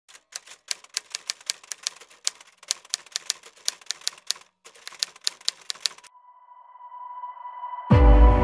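Typewriter key clicks as a sound effect, quick and even at about five a second, with a brief pause partway through. They stop after about six seconds, a steady electronic tone swells for two seconds, and music cuts in at the end with a deep hit.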